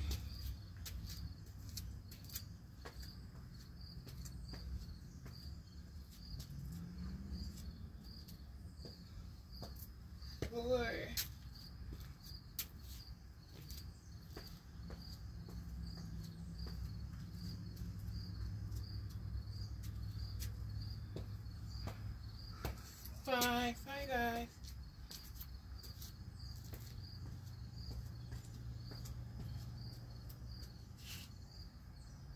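Crickets chirping steadily outdoors, an even high pulse repeating about twice a second, over a low background rumble.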